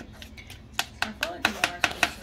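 Plastic spatula tapping and knocking against the plastic bowl of a mini food chopper as it scrapes down partly blended frozen pineapple and ice cream. A quick run of sharp taps starts about a second in.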